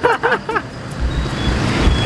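Road traffic noise from a city street, with a deep low rumble swelling in the second half.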